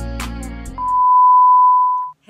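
Intro music with a beat stops abruptly, then a loud steady single-pitch beep, the test tone that goes with TV colour bars, holds for over a second.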